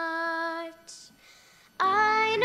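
A young girl singing, holding the last note of a lullaby-like line and closing it with a soft 'ch' about a second in; after a brief hush, loud singing with accompaniment comes back in near the end.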